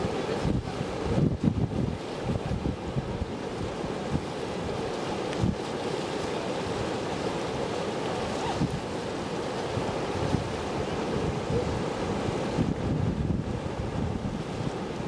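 Atlantic surf and shallow water washing steadily, with wind buffeting the microphone in irregular gusts, the strongest about a second in.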